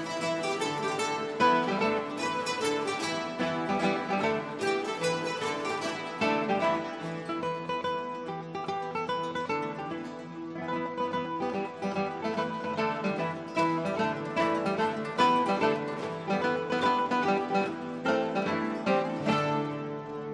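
A large ensemble of classical guitars playing together, many plucked notes in quick succession over held low notes.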